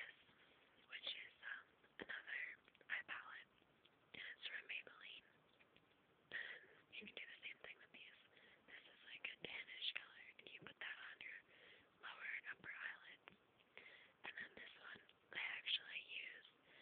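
A person whispering quietly, in short phrases with pauses between them.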